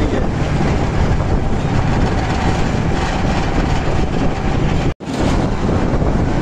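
Wind rushing over the microphone with steady road and traffic noise from riding along a busy road. The sound drops out for an instant about five seconds in.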